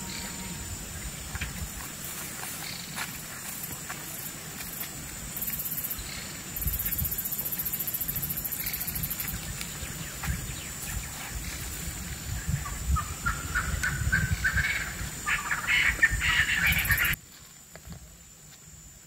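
Wild birds calling. The calls quicken into a loud, rapid run of repeated rising notes over the last few seconds, then cut off suddenly.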